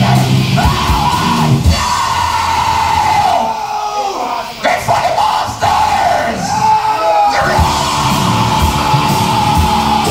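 Black metal band playing live, on a raw bootleg tape recording. About two seconds in, the drums and low guitars drop away, leaving a long wavering high line over a thin sound, and the full band comes back in about seven and a half seconds in.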